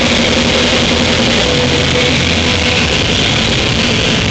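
Heavy metal band playing live and loud: distorted electric guitars holding notes over a dense, continuous wash of drums and cymbals.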